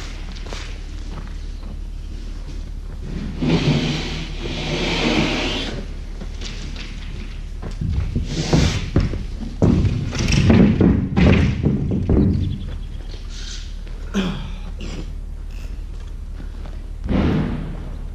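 A sheet of drywall being dragged off a stack and stood on edge against a wall: scraping and a run of heavy thumps, loudest between about eight and twelve seconds in, with a few lighter knocks after.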